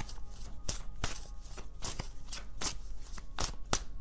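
A deck of tarot cards being shuffled by hand: an irregular run of card snaps and slaps, a few a second.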